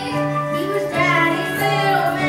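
A young performer singing a musical-theatre song over instrumental accompaniment, holding long notes that change pitch about a second in.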